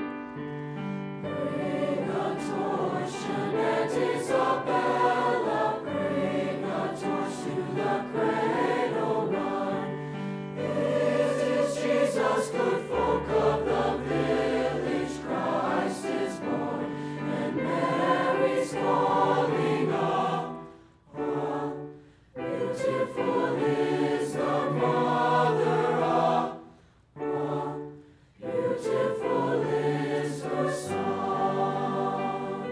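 High school mixed choir singing, coming in about a second in over a held piano chord. The singing breaks off twice briefly between phrases in the last third.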